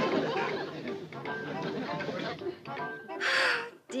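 Light sitcom music with a woman giggling and studio audience laughter, ending in a short breathy sound just before she speaks.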